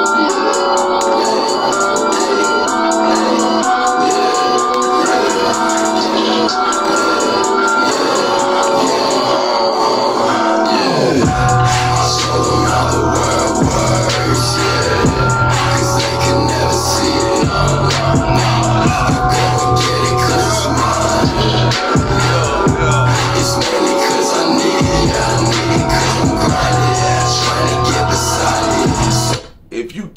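Underground hip-hop track playing: a melodic sampled loop without bass, then a falling sweep and the beat with heavy bass kicking in about eleven seconds in. The music cuts off just before the end.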